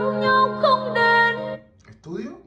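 A Vietnamese pop ballad with a woman singing long held notes, played through a portable Bluetooth speaker. The song breaks off about a second and a half in.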